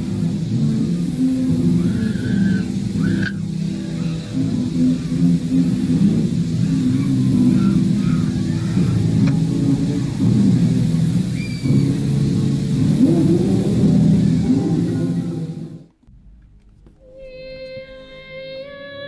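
Dense, distorted rumbling horror sound collage with wavering low tones, loud and unbroken for about sixteen seconds before it cuts off suddenly. Near the end a high, wavering falsetto note begins an opera-style song.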